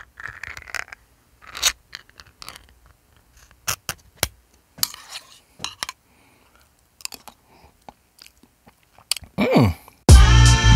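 Can opener working around a tin can: irregular sharp clicks and crunching scrapes of the blade cutting metal. Near the end comes a denser stretch with a short falling sweep.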